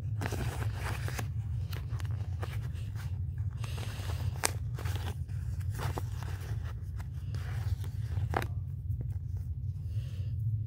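A paper sheet of sticker tabs rustling and crinkling as fingernails pick and peel a sticky tab off it, with sharp little clicks; the rustling stops near the end.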